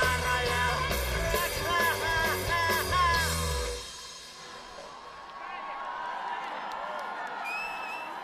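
Live rock band playing the final bars, the singer yelling over them, ending about four seconds in; then a large open-air crowd cheering.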